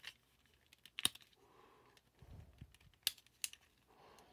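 Small plastic action-figure parts clicking and rubbing as a stiff hand piece is worked into place, with a few sharp, separate clicks and soft handling noise between them.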